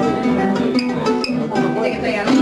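Fingerpicked instrumental introduction to an Argentine chacarera on a small acoustic plucked string instrument, quick notes ringing over each other in a steady lilting rhythm.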